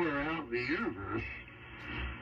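A voice received over shortwave AM on the 75-metre band, played from a Flex-5000A transceiver through speakers. It sounds thin and band-limited, over a steady hiss, and fades into hiss about a second in.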